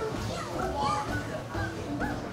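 Young children's voices and chatter as they play, over background music.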